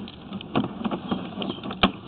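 Sewer inspection camera's push cable being fed along the pipe: faint irregular clicks and rustling, with one sharp click near the end.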